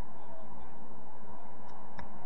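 Steady outdoor background noise at a floodlit football pitch, with a faint short call from a player on the field about half a second in.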